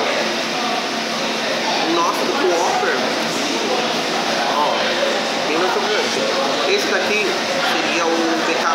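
Indistinct chatter of many people talking in a busy fast-food restaurant dining room: a steady babble of overlapping voices with no words standing out.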